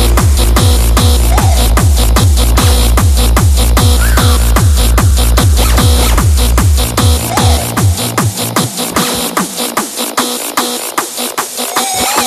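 Hardstyle track with a heavy distorted kick drum, each hit falling in pitch, about two and a half beats a second. About two-thirds of the way through, the kick drops out, leaving only the hi-hats and claps.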